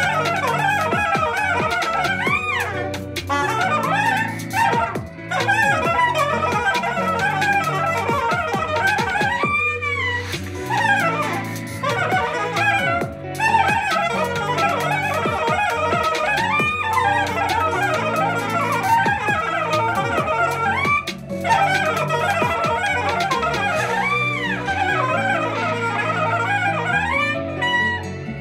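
Soprano saxophone playing a smooth-jazz solo line, with slurred runs and pitch bends broken by short breaths, over a backing track of steady sustained chords.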